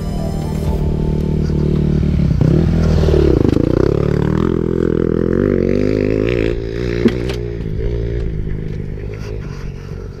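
Honda CRE 250 two-stroke enduro engine running, revved up and back down about three seconds in, then running with a wavering pitch. A few sharp clicks or knocks come around seven seconds in.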